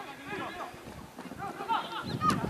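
Scattered shouts and calls from football players and spectators on the pitch, several voices overlapping and growing louder near the end.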